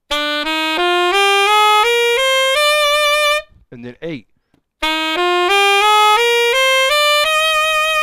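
Saxophone playing a scale up from the seventh degree, B to B (the Locrian mode of C major), eight even quarter-note steps rising one after another, played twice. A short spoken word comes between the two runs.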